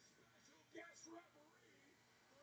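Faint speech from the television broadcast playing in the room, a short stretch about a second in, otherwise near silence.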